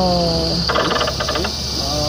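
Claw machine working its claw on a plush: a rapid buzzing pulse that lasts under a second, about a second in, over a steady high arcade hum. It is preceded by a drawn-out, falling spoken "oh" at the very start.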